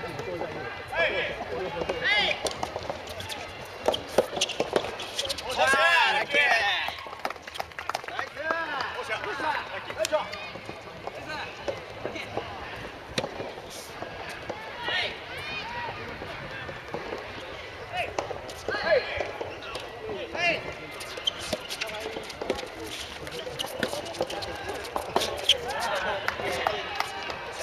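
Soft tennis rubber ball being struck back and forth by rackets in a doubles rally, a string of sharp pops, with players' shouts and voices: a loud call about six seconds in, others scattered through.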